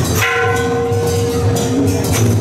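Procession percussion in which the rapid cymbal crashes pause and one stroke on a struck metal instrument rings out with several steady tones for about a second and a half, over continuing low drumming.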